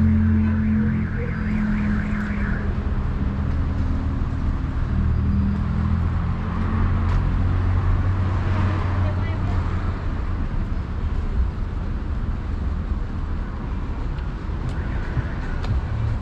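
Street traffic: car engines on the road alongside rumbling low and steady, louder in the first half. A repeating high beeping sounds in the first couple of seconds.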